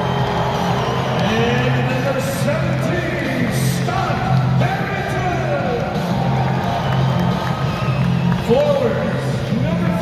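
Music over an arena's public-address system with a steady low bass, and the crowd cheering and whooping over it, echoing in the large hall.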